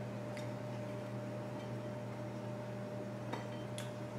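Quiet kitchen room tone with a steady low electrical hum, and a few faint clicks of a utensil against a plate: one soon after the start, two near the end.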